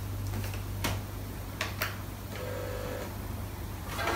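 A few light clicks and knocks of a plastic iBook G3 clamshell laptop being handled as its lid is opened, over a steady low hum.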